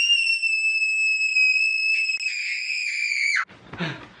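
A man screaming: one long, shrill, high-pitched scream, held steadily for about three and a half seconds, that dips in pitch and cuts off suddenly near the end.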